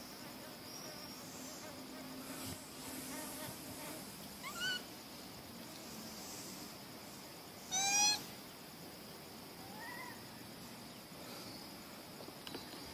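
An infant macaque gives three short, high-pitched calls about four, eight and ten seconds in, the middle one the loudest and longest. These are the calls of a baby being weaned and having trouble getting its mother's milk. A steady insect drone runs underneath.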